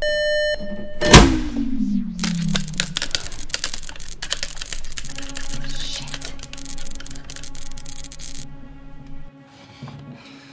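A beeping alarm cuts off, and about a second in comes a loud bang as a switch-box lever is thrown, followed by a falling whine. Then a few seconds of rapid electrical crackling and hissing that stop suddenly past eight seconds, with music rising underneath.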